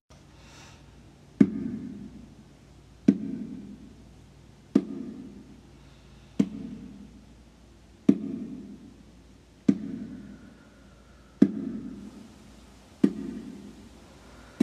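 Baby bongo struck in a slow, steady beat, about one stroke every second and a half, eight strokes in all. Each stroke is a sharp slap followed by a short, low ring that dies away.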